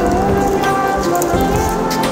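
Water splashing and pattering at the surface as a dense crowd of big catfish and carp churn and feed, with music playing alongside.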